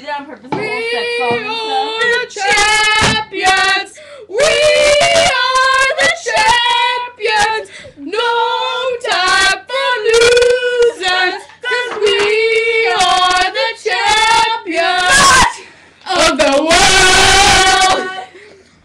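Teenage girls singing loudly, in phrases of long held notes broken by short breaths.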